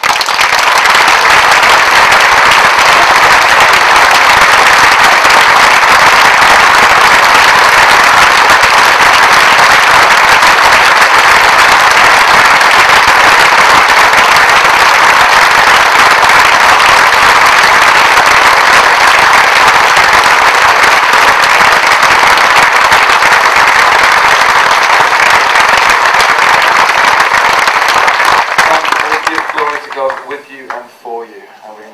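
Hall audience applauding, loud and sustained, swelling in the first second and dying down near the end.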